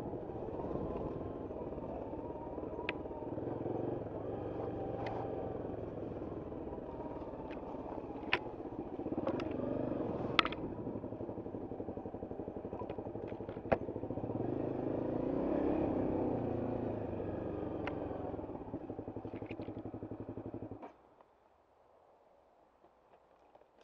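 Trail motorcycle engine running on a rough, overgrown dirt track, with the revs rising a couple of times and scattered sharp clicks and knocks. About a second before the end the engine cuts out suddenly.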